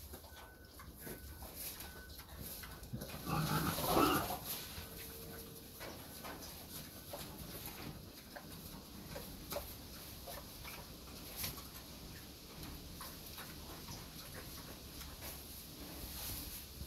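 Mangalitsa pig rooting close up in dry leaves and twigs, with crackling and rustling. About three seconds in comes one louder, rough call from the pig, lasting about a second.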